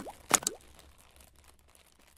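Logo-animation sound effects: a sharp pop at the start and another with a quick sliding pitch about a third of a second in, then dying away to faint ticks.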